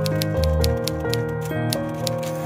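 Background music with sustained chords, over a rapid, steady run of typewriter key clacks, about six a second.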